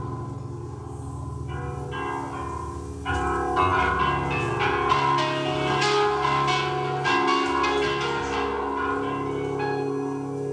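Live rock band playing a slow, spacious progressive-rock intro: sustained low keyboard and bass notes with bell-like ringing notes over them. About three seconds in it grows louder and the ringing notes come thicker and faster.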